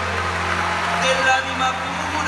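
Live band holding a sustained low chord, a steady bass note under held higher tones, as a song winds down.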